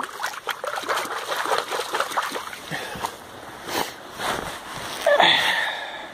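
Salmon splashing and sloshing in shallow river water at the bank as it swims off. About five seconds in comes a brief pitched cry, the loudest sound.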